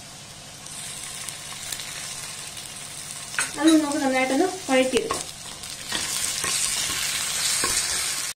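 Sliced onions, whole spices and green chillies sizzling in ghee in a non-stick pan, with ginger-garlic paste in among them. The sizzle grows louder in the last couple of seconds as a wooden spatula stirs the pan.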